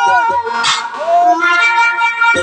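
Live Baul folk song through a stage PA. A child's sung note falls and fades just after the start, with low drum beats under it. About halfway there is a brief hiss and a short upward-sliding tone, then sustained instrumental chords.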